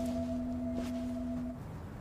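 Film score: a sustained, ambient drone of several held pitched tones that fades out about one and a half seconds in, leaving only a faint low background hum.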